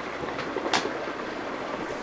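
Steady rushing background noise, with one short sharp knock a little under a second in as a chair is pushed in under a seated woman.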